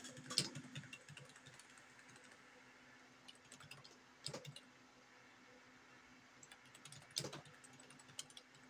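Typing on a computer keyboard: faint, irregular keystrokes in short runs, with a few louder key presses about half a second in, around four seconds, and near the end.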